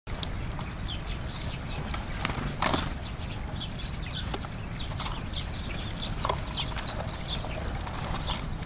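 Sparrows chirping in quick, repeated short calls, with a few sharp knocks, the loudest about two and a half seconds in, over a low steady rumble.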